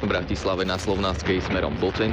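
Speech from a Slovak FM radio broadcast (RTVS on 91.2 MHz) playing through a receiver, over a heavy, uneven low rumble.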